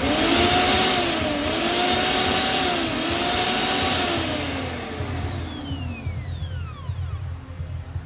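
Orpat mixer grinder's motor switched on with the jar fitted, running with a high whine that dips in pitch twice, then switched off about four seconds in and spinning down, its pitch falling away over the next few seconds. This is a test run of the mixer after its faulty coupler has been replaced.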